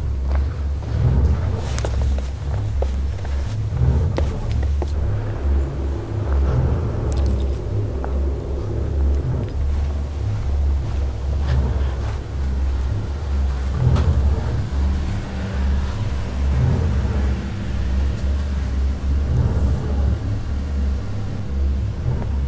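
A loud, continuous low rumbling drone that pulses slightly, with faint steady tones above it, and a few soft knocks along the way.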